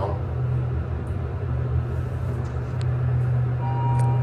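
Mitsubishi traction elevator car travelling upward: a steady low rumble of the cab in motion, with a brief thin tone just before the end.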